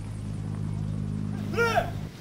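A steady low engine hum. A brief voice rises and falls near the end.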